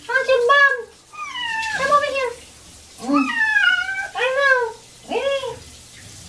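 Domestic cat meowing repeatedly while being washed under a handheld shower, about five or six drawn-out meows with short pauses between them.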